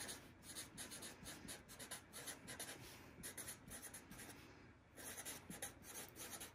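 Felt-tip marker writing on paper: a faint run of quick strokes, with a short pause about four and a half seconds in.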